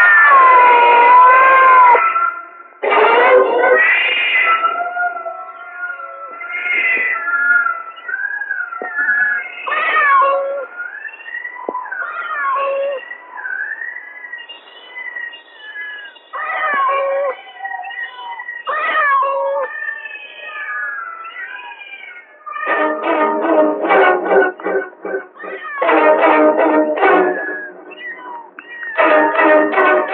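Tense film background score: high, wailing tones that slide up and down, then fast-pulsing chords in three loud bursts starting about three-quarters of the way through.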